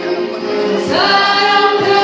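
Woman singing a Portuguese-language gospel song into a microphone with musical accompaniment; a long held note starts about a second in.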